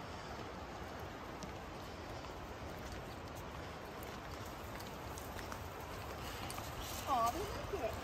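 Faint, steady outdoor background hiss with light footsteps of people and puppies walking a forest trail; a brief voice near the end.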